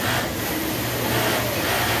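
Industrial sewing machine running steadily at speed while topstitching elastic onto a bra's lower edge, a continuous mechanical hum.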